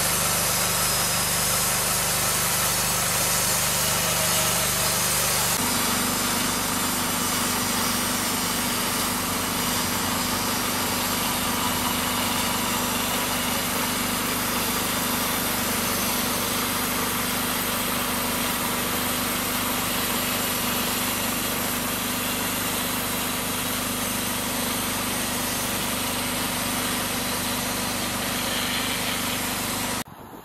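The small engine of a homemade band sawmill runs steadily, driving the band blade through a mesquite log. About five and a half seconds in, the engine's low note changes and then holds steady again.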